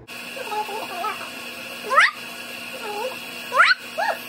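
High, squeaky meow-like calls: a few short wavering ones, then two sharp rising squeals about a second and a half apart, over a steady faint hum.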